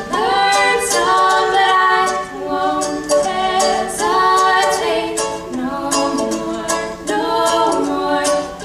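Two young women singing together into microphones, with a ukulele strummed in steady rhythm underneath.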